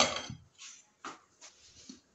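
A glass pot lid with a metal rim clinks loudly against the pot as it is lifted off, the ring fading over about half a second, followed by a few softer knocks and scrapes.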